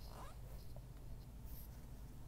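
Quiet enclosed interior with a steady low hum, faint rubbing and a couple of small ticks from a handheld camera being moved.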